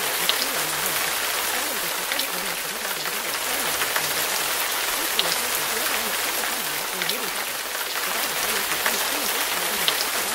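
Steady rain-like noise with a low, indistinct voice speaking beneath it, with a few faint drip-like ticks: a subliminal's masked affirmation track.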